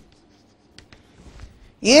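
Chalk faintly tapping and scratching on a chalkboard as letters are written, a handful of short ticks.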